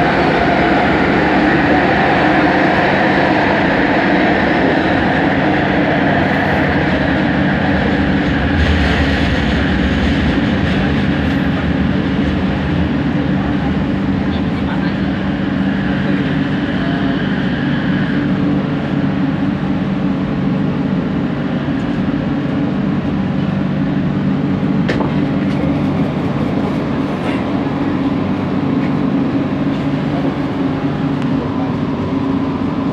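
Bombardier Innovia ART 200 metro train heard from inside the car, running through a tunnel with a steady rumble and a high whine that stops a little over halfway through. The train then slows and pulls into a station.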